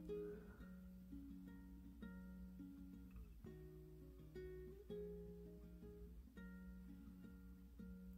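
Quiet background music: a plucked-string instrument such as a guitar or ukulele picking out a melody of single notes.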